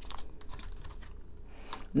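Tarot cards being handled as one more card is drawn from the deck: a few soft card clicks and rustles, mostly in the first half.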